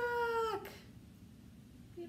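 A woman's voice imitating a peacock's call: one held cry about half a second long that drops in pitch as it ends.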